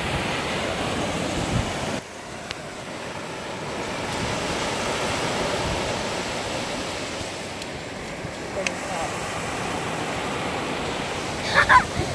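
Ocean surf washing up a sandy beach: a steady rush of breaking waves that dips suddenly about two seconds in, then swells and eases again.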